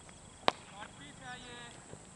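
A single sharp crack of a cricket bat striking the ball, about half a second in.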